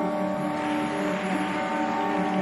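Figure-skating program music playing: sustained, held notes at an even level.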